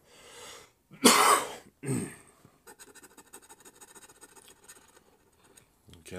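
A loud cough about a second in, with a shorter second cough just after. Then a scratcher tool scrapes the coating off a scratch-off lottery ticket, a faint, rapid scratching.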